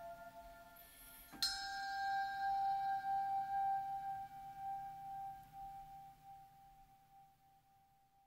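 A small metal bell or chime struck once with a mallet, giving a clear ringing tone with a few higher overtones that slowly fades away over about six seconds.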